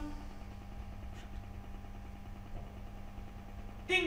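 A two-note 'ding-dong' doorbell chime signalling a visitor at the door: the end of one chime fades out at the start, a steady low hum fills the gap, and the chime sounds again right at the end.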